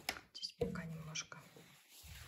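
A brief, quiet vocal murmur about half a second in, with a few light clicks of handling noise.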